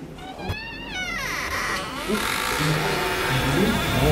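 A door creaking open with a drawn-out, wavering creak in the first two seconds. A swelling suspense sound builds under it toward the end.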